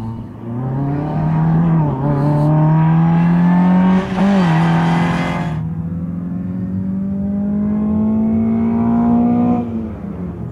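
Skoda Favorit's four-cylinder petrol engine driven hard: the revs climb, drop at a gear change about two seconds in, climb again, dip briefly around four seconds, then rise slowly before falling off near the end. A loud rush of noise rides over the engine for a couple of seconds around the middle.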